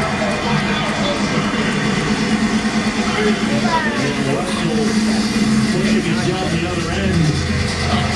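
Indistinct voices over background music and a steady low hum, with no clear words.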